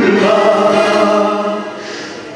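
A man singing one long held note into a microphone, the note dying away near the end.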